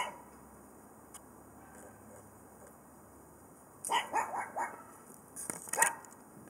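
Animal calls: one sharp call at the start, then a quick run of about five short calls about four seconds in, and another burst of calls near the end.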